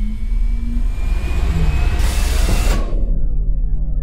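Cinematic electronic intro sound design: a deep steady bass drone under a rising whooshing swell that cuts off sharply about three seconds in. Several falling synth tones glide down after the cut.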